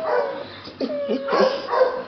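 Black Shar Pei cross dog whining in several short pitched calls.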